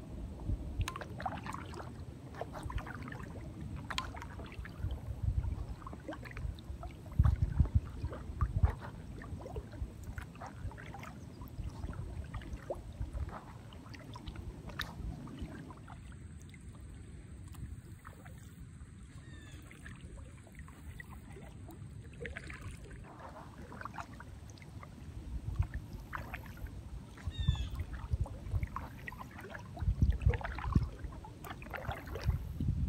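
Paddle strokes of an inflatable kayak: water splashing and dripping off the paddle blades, with dull low thumps that are loudest around seven to nine seconds in and again near the end, and a quieter stretch in the middle.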